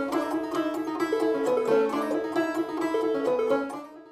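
Five-string open-back banjo fingerpicked in Roundpeak style: a quick, steady run of plucked notes that stops just before the end.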